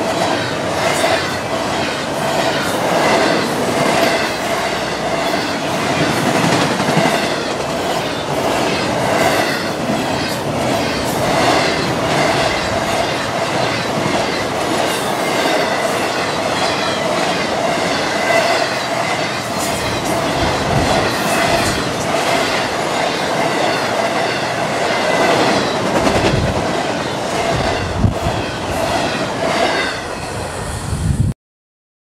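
Double-stack intermodal freight train rolling past: steady wheel and rail noise with rhythmic clicking over the rail joints and a steady ringing tone from the wheels.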